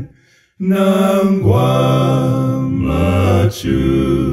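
One man's voice, multitracked into four-part a cappella harmony, singing a Bemba gospel hymn. After a short pause at the start, the parts come in about half a second in on a long held chord, with a brief break for breath near the end.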